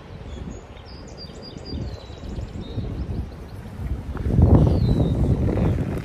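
Wind buffeting the microphone, with a stronger gust about four seconds in, and a small bird chirping faintly in the first couple of seconds.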